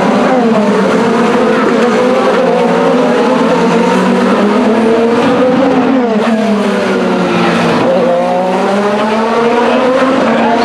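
A stream of IndyCars with 2.2-litre twin-turbo V6 engines passing close by one after another at high revs as the field gets back up to speed on a restart. Their overlapping engine notes rise and fall in pitch as each car goes by, with deeper falling sweeps about six and eight seconds in.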